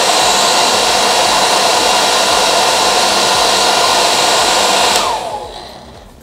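Beurer StylePro HC 25 1600-watt travel hair dryer blowing steadily, its fan noise carrying a steady whine. About five seconds in it is switched off, and the whine falls in pitch as the fan spins down.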